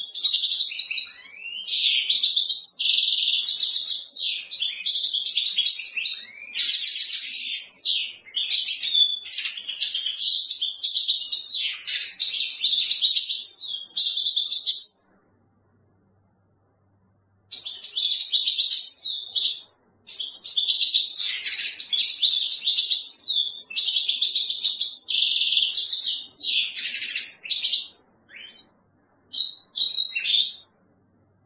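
European goldfinch singing: long runs of fast twittering and trills that break off for a couple of seconds about halfway through, then resume and end in a few short separate notes.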